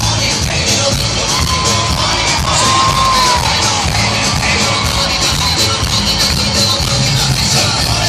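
Live band music with a steady beat, played loud through a concert sound system.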